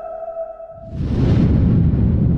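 Logo-sting sound design: a held synthesised tone fades out, then about a second in a sudden whoosh breaks into a loud, deep rumbling hit that keeps going.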